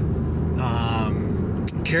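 Steady low engine and road rumble heard inside the cabin of a moving car.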